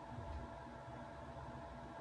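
Faint room tone: a steady low hiss with a thin, faint steady hum.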